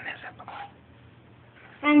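A voice trails off, then a quiet pause with only a faint steady low hum, and speech starts again near the end.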